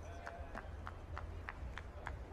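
Beach volleyball players' quick footsteps in the sand during a rally, short soft ticks about three or four a second, over a steady low rumble of wind on the microphone.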